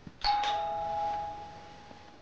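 Doorbell chime ringing two descending notes, ding-dong, about a quarter second in, the tones fading away over about a second and a half.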